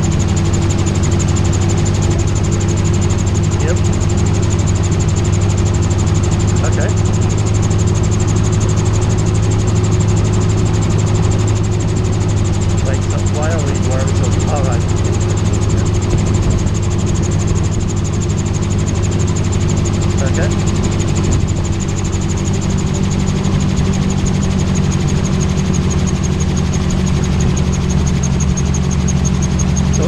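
Magni M16 autogyro's engine running steadily under power in flight, with wind rushing over the open cockpit.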